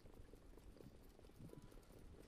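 Faint, irregular hoofbeats of Standardbred trotters pulling sulkies, barely above near silence.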